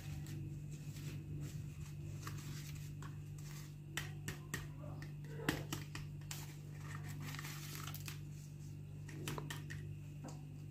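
Handling of a plastic fashion doll and its fabric skirt: scattered small clicks and rustles, the sharpest click about five and a half seconds in, over a steady low hum.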